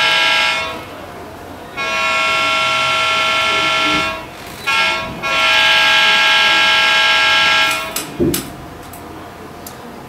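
A model locomotive's sound decoder playing a recorded diesel air horn through its small speaker, sounding the grade-crossing signal: the end of a long blast, a second long blast, a short one, then a final long blast that stops about 8 seconds in. A brief knock follows shortly after.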